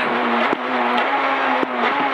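Peugeot 208 R2 rally car's naturally aspirated four-cylinder engine, heard from inside the cabin, held at high revs at a fairly steady pitch, with road noise under it. Two sharp knocks come about half a second apart from the middle of the run.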